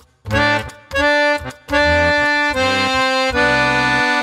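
Harmonium playing a short phrase of reedy sustained chords: a few brief ones, then longer held ones, the last chord ringing out to the end.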